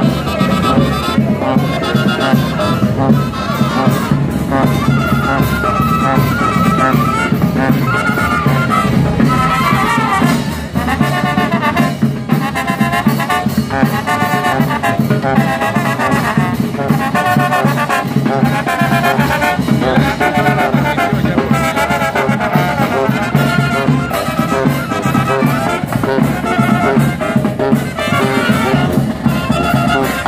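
Brass band playing a lively tune: trumpets and trombones carrying the melody over a bass drum and snare drum, loud and continuous.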